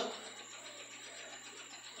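Faint, steady whirr of a home exercise bike's flywheel and drivetrain being pedalled.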